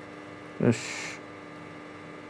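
Steady electrical hum, like mains hum, with one short spoken word about half a second in.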